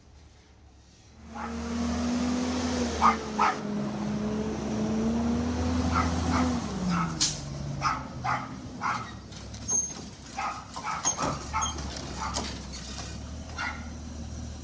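Garbage truck engine running with a steady whine that holds its pitch, then drops about six and a half seconds in as the truck pulls up and stops. A dog barks repeatedly over it through the second half.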